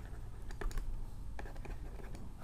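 Faint, irregular light taps and scratches of a stylus writing on a drawing tablet.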